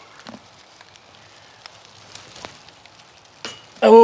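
Quiet woodland background with faint scattered ticks, then a thrown golf disc lands among dry leaves by the basket with one sharp, brief impact about three and a half seconds in. A man's voice exclaims right after, near the end.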